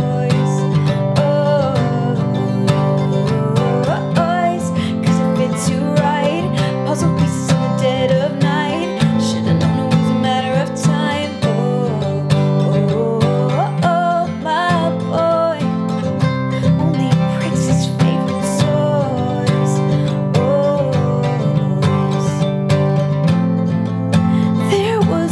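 Steel-string acoustic guitar strummed in a steady rhythm, accompanying a woman singing with vibrato.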